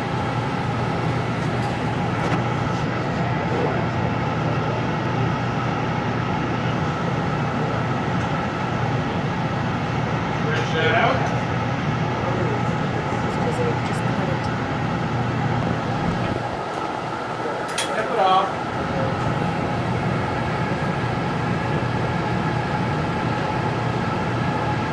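Steady drone of a gas-fired glassblowing glory-hole furnace and its burner blower. It eases off briefly about two-thirds through, with faint voices in the background.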